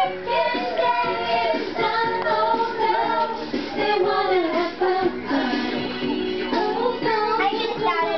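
A young girl singing a song, her voice continuing without a break.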